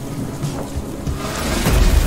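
Rain pouring steadily; about one and a half seconds in, a deep rumble of thunder starts and grows louder.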